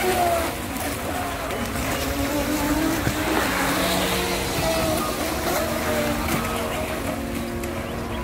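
Radio-controlled model speedboats running fast on a pond, their motors buzzing with the pitch sliding up and down as the boats pass.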